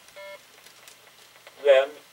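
A short electronic beep, one steady tone lasting about a fifth of a second, near the start. About 1.7 s in comes a brief, louder voiced sound that bends in pitch.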